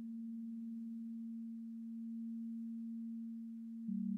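Behringer/ARP 2500 modular synthesizer sounding a low, steady sine-wave tone, which steps down to a slightly lower, louder note just before the end.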